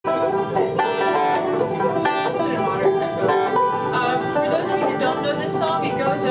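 Five-string resonator banjo picked bluegrass-style: a quick lick of picked notes with pinches, running into a slide, with the notes ringing on over one another.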